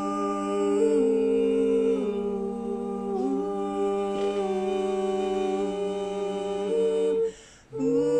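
Three male voices humming sustained wordless chords a cappella in close harmony, the chord shifting every second or so. They stop for a moment about seven seconds in and come back in on a new chord.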